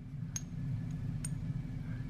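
Two light metallic clicks, about a third of a second and a second and a quarter in, as a small poured-silver hammer is set back onto a silver anvil held in the palm, over a steady low hum.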